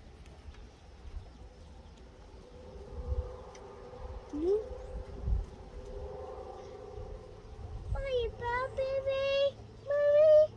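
A child's wordless voice, faint and drawn out through the middle, then louder and bending in pitch near the end. A few dull bumps are heard.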